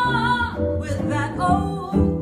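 Female jazz vocalist singing with a small jazz band, hollow-body electric guitar and upright bass behind her. She opens on a held note with vibrato, then moves through shorter notes.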